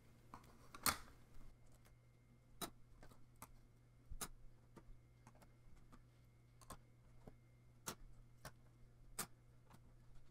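Plastic Rubik's Magic tiles clicking and tapping against each other and the tabletop as they are flipped and set down by hand: about ten scattered sharp clicks, the loudest about a second in.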